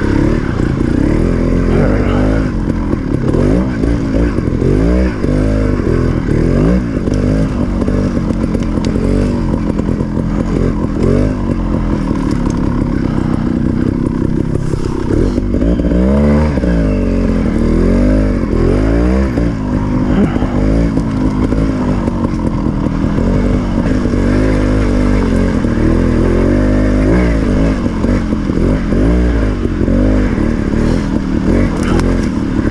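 Gasgas TXT 250 two-stroke single-cylinder trials bike engine being ridden, its pitch rising and falling every second or two as the throttle is blipped and eased along the trail.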